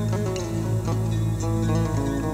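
Acoustic guitar played in a run of short plucked notes over a steady low drone.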